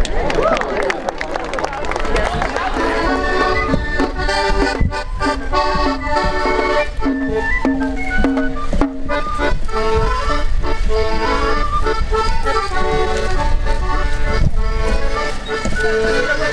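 An accordion playing a traditional tune of steady held notes that change in step. It comes in about three seconds in, after voices at the start.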